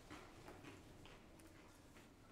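Near silence: room tone with a few faint ticks from sheets of paper being handled.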